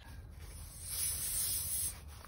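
A soft high hiss, louder for about a second in the middle, as the cordless tire inflator's hose chuck is screwed onto a car tire's valve stem.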